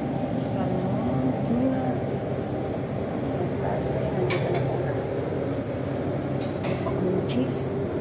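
Dining-room hubbub of background voices over a steady low hum, with a few sharp clinks of dishes and cutlery scattered through it.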